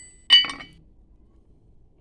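A hammer striking a small piece of gold on a steel plate once, with a short clinking metallic ring, then a lighter tap right after. The gold is being beaten flat as a test, since gold squashes flat where pyrite crumbles.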